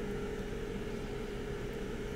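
Steady background hum and hiss with one thin, constant tone, and no distinct events.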